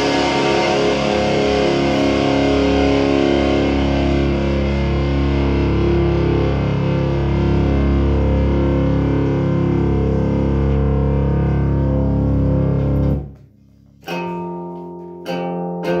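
Stratocaster-style electric guitar played through distortion: a chord rings on and is cut off suddenly about thirteen seconds in. After a short pause, a few strummed chords follow near the end.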